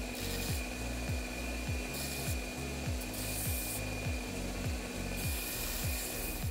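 Belt grinder running with a steady whine while the steel nose of a pair of round-nose pliers is ground down on the sanding belt. The grinding hiss swells in bursts about two seconds in, again after three seconds, and near the end.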